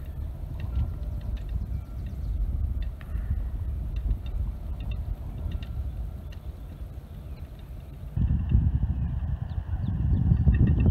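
Wind buffeting the microphone, a low rumble that strengthens in a gust about eight seconds in, with faint scattered clicks.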